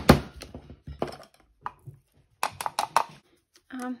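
Sharp knocks and taps of an electric spice grinder (a converted coffee grinder) being handled and tapped to loosen freshly ground orange peel: loud knocks at the start, then lighter, scattered taps and clatter.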